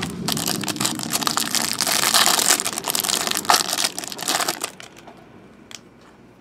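Clear plastic wrapper of a pack of basketball trading cards being torn off and crinkled. It runs for about four and a half seconds, then dies away.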